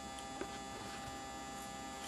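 400-watt high-pressure sodium (HPS) grow light buzzing with a steady hum just after being switched on, while the lamp is still heating up; the buzz is expected to ease once it is warm.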